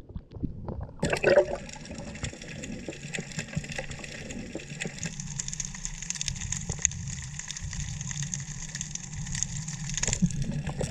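Water sloshing at the surface, then a splash about a second in as the camera goes under, followed by steady underwater noise: a dense crackle of fine clicks over a low hum.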